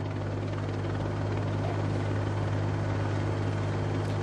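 Steady low engine drone from a race broadcast vehicle, with an even hiss of road and wind noise over it.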